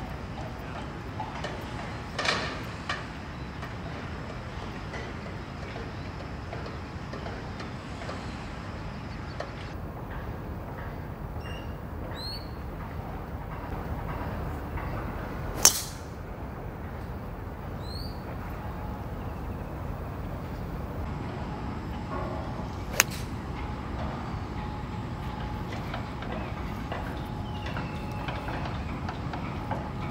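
Golf driver striking a ball off the tee: one sharp crack about halfway through, the loudest sound, over steady outdoor wind noise. A few short rising bird chirps come before and after it, and a second, smaller crack follows a few seconds later.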